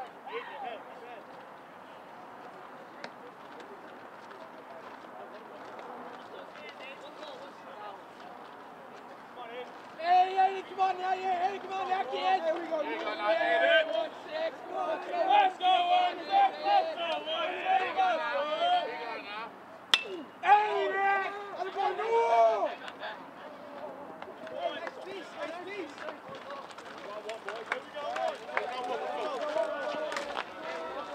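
Baseball players and spectators shouting and calling out on an open field. A quieter stretch of distant murmur comes first, then about a dozen seconds of loud shouting. One sharp crack sounds in the middle of the shouting.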